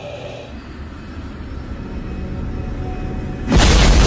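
Low rumbling drone that slowly swells, then about three and a half seconds in a sudden loud boom with heavy rumbling that carries on: a dramatized sound effect for the violent jolt that strikes the climbing 747 cargo jet.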